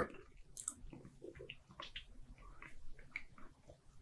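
Faint, scattered lip smacks and tongue clicks from a man's mouth, over a faint low steady hum.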